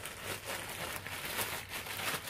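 Clear plastic bag crinkling and rustling as a dress is pulled out of it by hand, in irregular small crackles.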